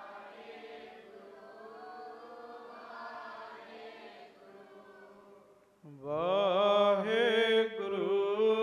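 A man chanting a slow Sikh devotional melody into a microphone, with long held notes. A softer sustained sung passage gives way, about six seconds in, to a louder voice that glides up into a held, wavering note.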